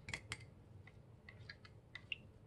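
Faint, light clicks of a thin stirrer tapping against a small cup while mica colourant is mixed in alcohol, a few scattered ticks.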